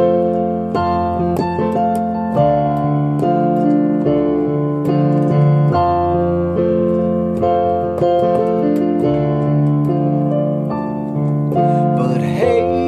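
Piano-style keyboard accompaniment playing an instrumental break between sung verses: sustained chords, a new chord struck every second or two, with no voice.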